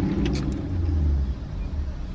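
Steady low rumble of a car idling, heard from inside the cabin, with a few faint sips through a drinking straw early on.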